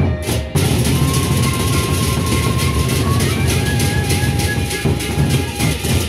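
Sasak gendang beleq ensemble playing: large double-headed barrel drums beaten with sticks in a fast, dense rhythm. Clashing cymbals come in sharply about half a second in, with sustained ringing pitched tones above.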